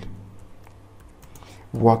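A few faint, separate key clicks on a computer keyboard as a short word is typed.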